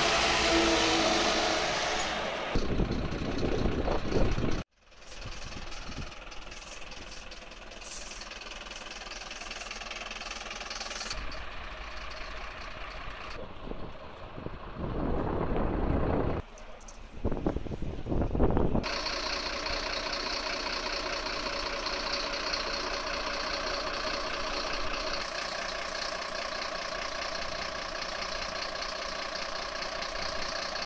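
A fire engine driving past with its engine running, the sound broken by several abrupt cuts. Then fire trucks' engines idle steadily for about the last ten seconds.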